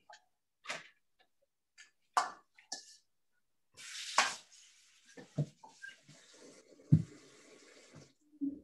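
A kitchen tap turned on about four seconds in, water running into the sink, with a couple of sharp knocks of handling along the way, heard over a video call.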